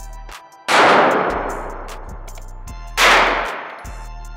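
Two shots from a Taurus GX4 9 mm micro-compact pistol, about two and a half seconds apart, each with a long echo off the indoor range that dies away over about a second. Background music with a steady beat plays throughout.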